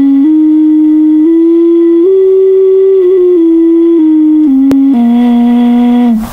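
Clay ocarina playing a slow, simple tune of clear, pure held notes. The tune steps up note by note to its highest pitch around the middle and back down to the low starting note, which is held near the end, with a brief click just before it.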